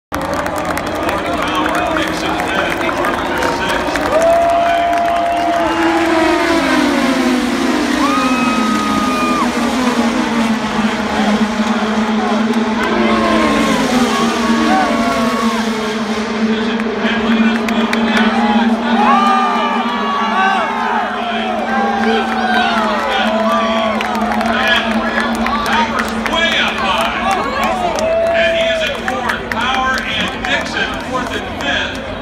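Indy car engines, 2.2-litre twin-turbo V6s, droning around the oval, their pitch dropping as cars pass about six seconds in and then holding steady, under grandstand crowd noise and a public-address announcer's voice.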